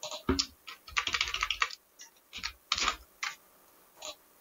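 Typing on a computer keyboard: a few separate keystrokes, a quick run of them about a second in, then a few more spaced-out keystrokes.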